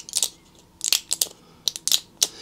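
Plastic-and-foil blister pack of tablets crackling and clicking as it is handled, in about six short sharp crackles with quiet gaps between them.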